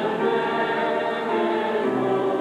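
A church congregation singing a hymn together, sustained notes moving from one to the next at a steady pace.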